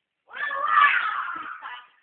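A toddler's long, high-pitched squeal that falls in pitch, lasting about a second and a half.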